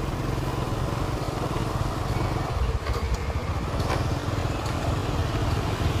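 Motorbike in motion: a steady low rumble of its engine and wind noise, with a few faint ticks.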